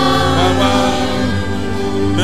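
Church choir singing a gospel song over a steady low bass accompaniment.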